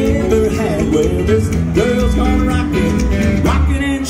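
Live rockabilly band playing: electric guitar, acoustic rhythm guitar, upright bass and drums, loud and steady.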